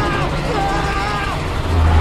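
Film sound mix: a woman screaming in two long cries that dip in pitch as they end, over a steady low rumble of a plane going down, which swells louder near the end.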